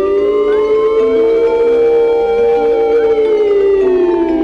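Music: one held lead note slides slowly up and then back down like a siren, over soft sustained chords that change in steps.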